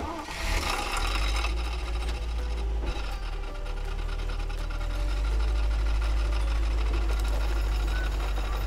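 Steady low running sound of a vehicle engine with a rapid mechanical rattle, as for an open safari vehicle driving, with light music faint underneath.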